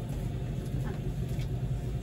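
Steady low rumble of an ambulance, heard from inside its patient compartment, with faint voices in the background.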